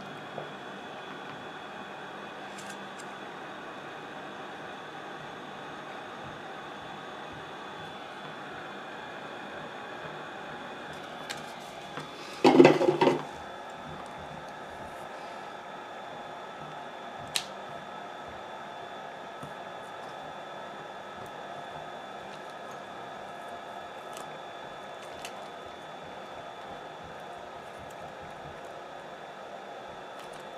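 Mini hot-air heat gun running with a steady fan hum while it preheats the adhesive under the phone's sub-board. There is a brief, loud clatter of tool handling about twelve seconds in, and a few light clicks of pry-tool work.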